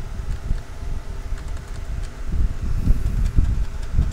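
A steady low rumble of background noise, uneven in level, with a faint hum and a few faint clicks of computer keys being pressed.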